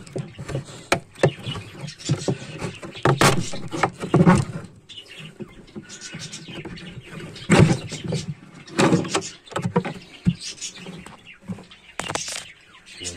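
A wooden nest box being worked loose and pulled off an aviary's wooden wall by hand: irregular wooden knocks, scrapes and clatters, with louder bangs about three, four, seven and a half and nine seconds in.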